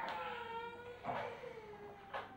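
Kitchen knife cutting noodle dough on a wooden board, a sharp knock of the blade on the wood about once a second. Over it runs a long, high-pitched call that slowly falls in pitch.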